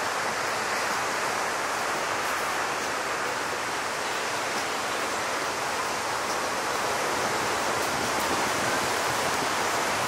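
Big ocean surf breaking and churning in whitewater, heard as a steady, even rush of noise with no single crash standing out.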